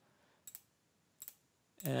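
Two short, sharp clicks of a computer mouse button, about three quarters of a second apart.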